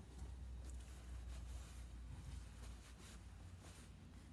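Quiet room tone: a steady low hum with a few faint rustles and handling noises from someone moving close to the phone.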